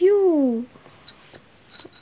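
A woman's voice saying one drawn-out word with a falling pitch, then a quiet room with a few faint, short clicks.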